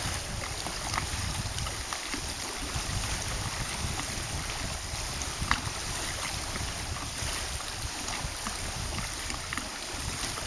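Wind gusting on the microphone over small waves lapping at the lakeshore, with scattered light ticks and one sharper click about five and a half seconds in.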